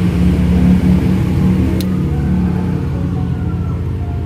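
A steady low motor hum with a slight rise and fall in pitch, and one short click about two seconds in.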